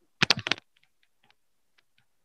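A quick run of five or six sharp clicks close together, followed by a few faint scattered ticks.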